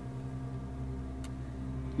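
A steady low hum made of several held low tones, with one faint tick a little past halfway.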